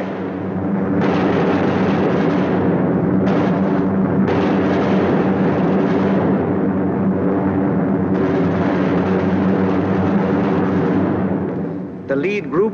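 Steady drone of B-17 Flying Fortress bombers' Wright Cyclone radial engines and propellers in formation flight. The higher hiss above the drone cuts in and out abruptly a few times.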